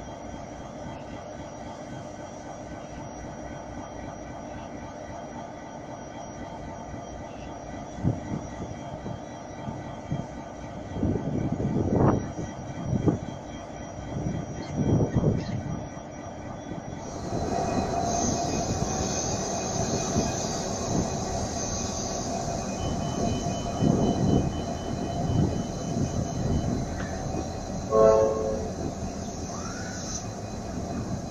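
Pacific National freight train's diesel locomotives running as they pass slowly, with a steady engine drone and louder swells. The sound steps up about halfway through as the locomotives and wagons come past. A brief horn note sounds near the end.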